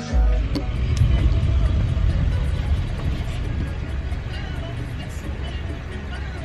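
Low, steady rumble inside a car's cabin, with a sharp click about half a second in.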